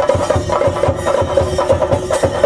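Chenda drums, the cylindrical temple drums of Kerala, beating a fast, driving rhythm to accompany a theyyam dance.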